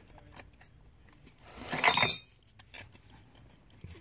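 Hands handling a plastic manual grommet press and its spacer: a few light clicks, then a brief jingling rattle about two seconds in.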